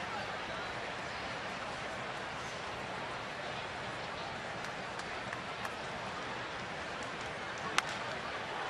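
Steady murmur of a ballpark crowd, then near the end a single sharp crack of a wooden baseball bat meeting a fastball, struck for a base hit to right field.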